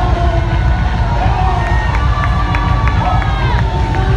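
A worship song performed live and loud through a PA: a bass-heavy band with several voices singing, and a crowd cheering and singing along.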